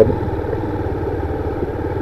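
Honda CG 160's single-cylinder four-stroke engine running at low, steady revs as the motorcycle is ridden slowly in low gear.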